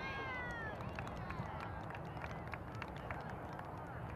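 Distant shouting from players and spectators at a youth soccer game, starting with a high, falling shout in the first second and followed by scattered calls. Under the voices runs a steady low rumble, likely wind on the microphone.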